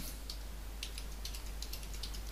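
Computer keyboard being typed on: a quick run of light keystrokes as a name is entered.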